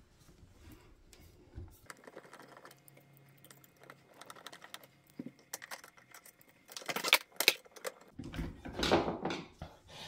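Screwdriver working screws into the plastic frame of an electric pressure washer, with small scattered clicks and rattles of tool and parts; the clicks and knocks come thicker and louder in the last three seconds.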